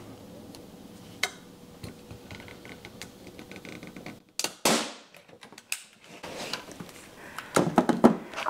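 Clicks and rattles of a hand-squeezed manual staple gun being pressed into place on a magnetic poster-frame hanger, then one short sharp snap about four and a half seconds in as it drives a staple, with the sound cut to dead silence just before and after it. Tool handling clatters near the end.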